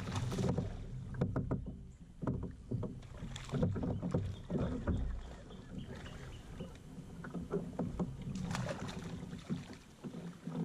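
Water sloshing and slapping against the hull of a plastic fishing kayak, with irregular knocks and clicks throughout over a steady low rumble.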